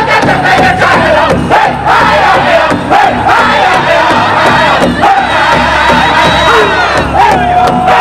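Powwow drum group singing a traditional song: a group of men singing loudly and high-pitched in unison over a steady beat on a large shared powwow drum. The voices hold one long note near the end.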